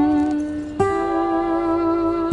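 A musical instrument holding long, steady notes: one note rings on, then a new one starts nearly a second in and is held for about a second and a half.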